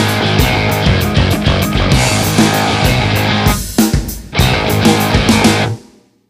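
Rock band with electric guitar, bass and drums playing an instrumental passage, with a short dip a little past halfway; near the end the whole band stops abruptly into silence.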